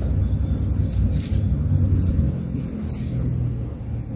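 A low, uneven background rumble with no clear pattern.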